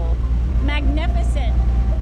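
Steady low engine rumble from the motor of a junk boat under way, with brief voices over it.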